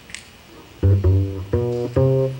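Upright double bass played pizzicato: after a brief pause, a few separate plucked low notes, each ringing on, starting just under a second in.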